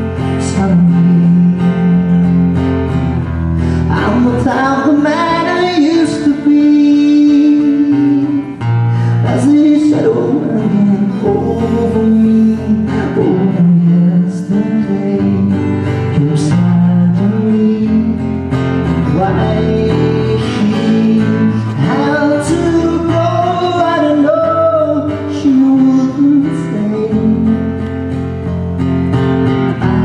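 A man singing with a strummed acoustic guitar in a live solo performance, his voice coming in phrases over steady guitar chords.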